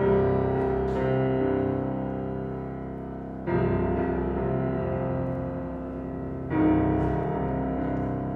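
Grand piano played slowly: full chords are struck at the start, about three and a half seconds in, and near the end. Each chord is left to ring and fade before the next.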